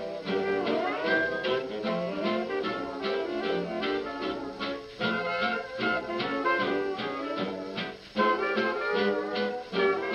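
A 1929 electrically recorded 78 rpm shellac record of a jazz dance orchestra playing an instrumental passage of a fox trot: brass and reeds over a steady dance beat with guitar. There is a short break in the playing about eight seconds in, and the sound is cut off above the treble in the manner of an early recording.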